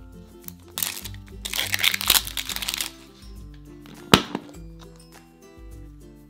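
Plastic wrapping crinkling as it is torn off a plastic toy capsule ball for about two seconds, then one sharp crack as the ball's two halves are pulled apart, over light background music.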